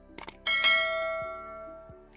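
A bright bell-like chime struck once about half a second in, after a couple of quick ticks, ringing and fading away over about a second and a half. Soft background music runs underneath.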